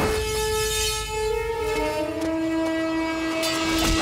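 Dramatic action-film background score: long held horn-like notes that step down in pitch every second or two, over a low rumble, with a brief hit right at the start.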